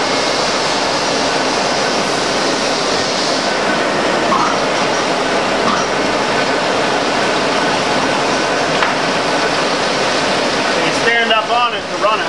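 Six-spindle Cone automatic lathe running: a loud, steady, even mechanical noise with no break.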